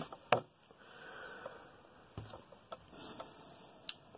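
Cardboard LP record jackets being handled and slid out of a stack: a sharp click at the start, a soft sliding hiss, then a few light knocks and rustles.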